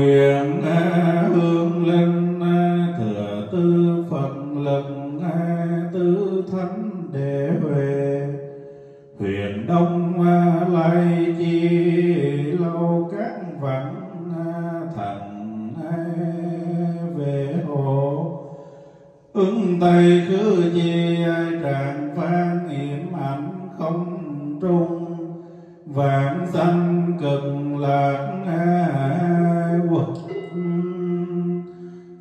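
Vietnamese Buddhist chanting: many voices intoning in unison in long sustained phrases, with short breaks about 9, 19 and 26 seconds in.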